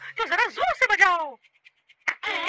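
A cartoon character's voice making a few wordless vocal sounds with sliding, falling pitch, breaking off about a second and a half in.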